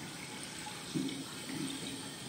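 Recorded water sounds played through a loudspeaker: a steady hiss with two short, low watery blips, about a second in and again half a second later.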